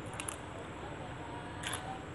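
Fresh green vegetable stalk being snapped apart by hand, giving short sharp crisp clicks: a quick pair just after the start and another about two-thirds of the way through.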